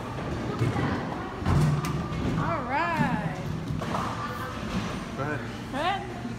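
Bowling alley din: a few heavy thuds of bowling balls and pins, the loudest about one and a half seconds in, under background voices and a wavering voice calling out.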